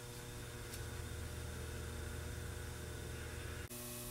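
Quiet room tone: a steady electrical hum under even background hiss, with a faint click about a second in. Near the end the background cuts off abruptly and resumes slightly different.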